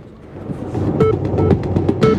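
News bulletin closing theme music rising in, with quick percussion hits and a steady pulse starting about a second in.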